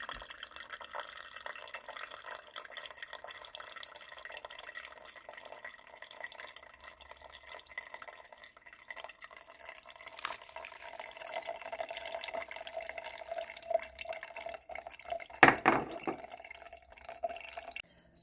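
Brewed coffee dripping and trickling from a pour-over dripper's paper filter into a ceramic mug. Near the end there is a brief louder clunk.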